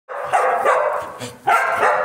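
A dog barking and yelping in two loud bouts, the second starting about a second and a half in.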